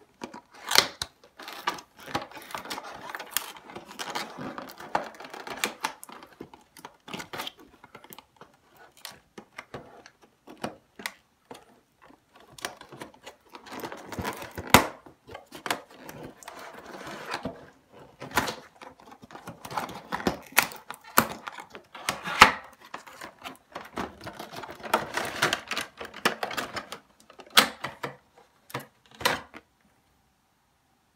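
A cardboard retail box and its packaging being opened and handled by hand: irregular clicks, taps, scrapes and rustles in quick clusters, with short pauses between them.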